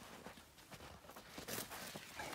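Faint handling noise of a steel snow chain being fitted: a gloved hand rustling through snow and light clinks of chain links, with a slightly louder scrape about one and a half seconds in.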